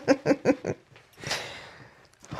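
A woman giggling in a quick run of short, evenly spaced bursts that stop under a second in, followed by a soft breathy exhale.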